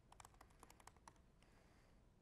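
Faint computer-keyboard typing: a quick run of about a dozen keystrokes lasting about a second, a password being entered at a sudo prompt, then the keys stop.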